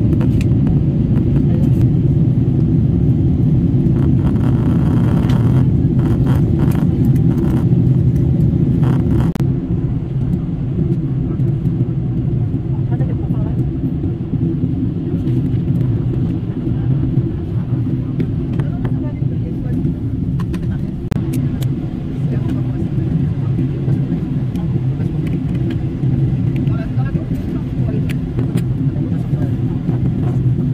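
Airliner cabin noise in flight: a steady, deep rumble of the jet engines and rushing air heard from inside the cabin, slightly louder in the first third.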